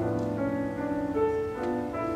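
A slow choral piece for mixed high-school choir and piano, with the piano accompaniment most prominent here.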